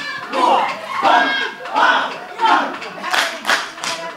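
A group of kneeling dancers chanting in unison in short rhythmic calls, about one every two-thirds of a second. Near the end sharp hand claps and slaps join in, about three a second.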